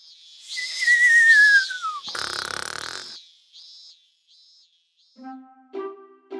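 Cartoon snoring sound effect for a sleeping rabbit: a long falling whistle, then a breathy puff, with a run of short high beeps that fade away. Near the end, light plucked music notes begin.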